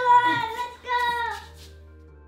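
A child's high-pitched voice in two drawn-out cries over the first second and a half, then soft, steady synthesizer music.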